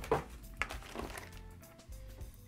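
A few clicks and rustles from plastic-bagged cable accessories being handled, with faint short steady tones underneath like quiet background music.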